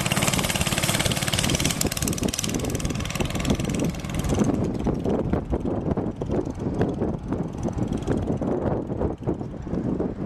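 A go-kart's small engine running as the kart drives close past, loudest for the first four seconds, then thinner and more broken as it pulls away.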